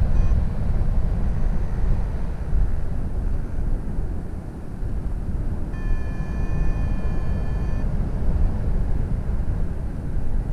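Wind rushing over the microphone of a camera on a paraglider in flight, a steady low rumble. About six seconds in, a steady high tone sounds for about two seconds.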